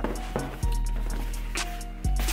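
Background music with deep, long bass notes, a new one struck about half a second in, and light hi-hat ticks.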